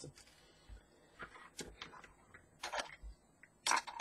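Faint, scattered clicks and rustles of thin wires and small LED parts being handled on a desk, about half a dozen short noises with the sharpest one near the end.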